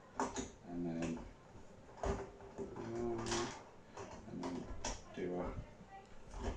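A man's low muttering under his breath while fitting the plastic handle parts of a lawn vacuum together, with a few clicks and knocks of the parts; the sharpest knock comes about two seconds in.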